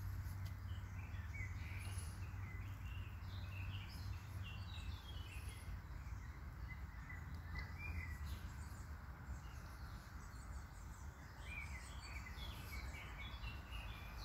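Small birds singing in short chirping phrases, in clusters with gaps between, over a steady low background hum.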